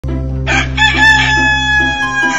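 A rooster crowing once, a long call beginning about half a second in and held to the end, over a steady low drone.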